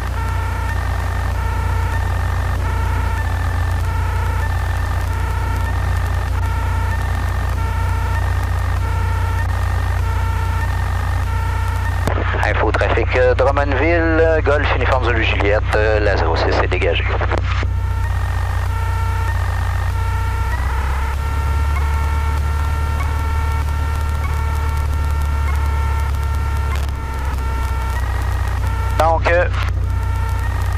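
Cessna 152's four-cylinder Lycoming engine and propeller running at low taxi power, a steady low drone heard in the cockpit. The pitch shifts slightly a little past the middle. A short, narrow-sounding radio voice transmission comes through in the middle.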